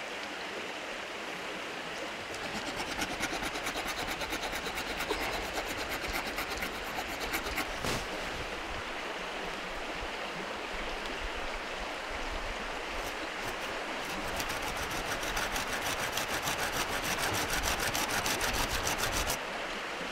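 A small hand saw cutting through a green grand fir pole about an inch and a half thick, in quick, steady back-and-forth strokes. The strokes grow louder and faster in the last few seconds.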